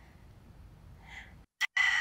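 Mostly quiet, with a soft breath about a second in, then near the end a woman's forced exhale through the mouth, a breathy hiss with a steady whistling tone, the Pilates breath out timed with the leg change.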